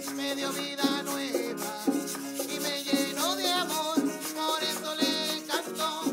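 A small choir singing a hymn to an electronic keyboard, with a shaker such as maracas keeping a Latin dance rhythm. The voices waver with vibrato over sustained keyboard chords, and there is a regular percussive stroke about once a second.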